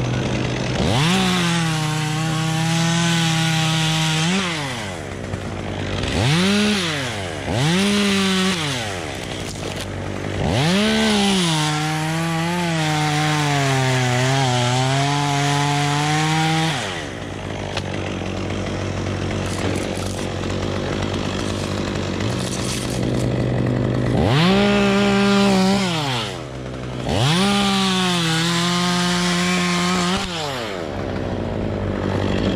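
Stihl top-handle chainsaw revving from idle to full throttle in repeated bursts as it cuts through pine limbs. The longest cut runs about six seconds in the middle, the engine's pitch sagging under the load; the saw then idles for several seconds before two more bursts near the end.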